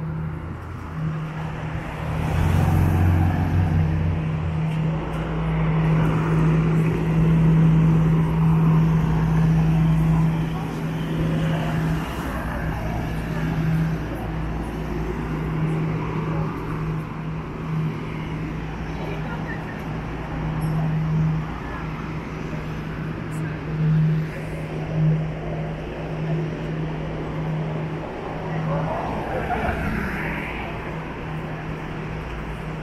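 City street ambience: car traffic passing and passersby talking, over a steady low hum.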